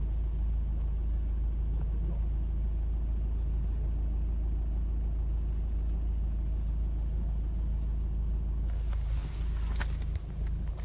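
Car engine and road rumble heard from inside the cabin in slow traffic: a steady low drone with an even engine hum.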